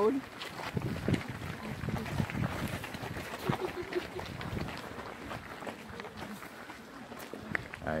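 Footsteps of a group walking on a gritty road surface, an irregular patter of scuffs and crunches, with faint voices of the walkers chatting among them.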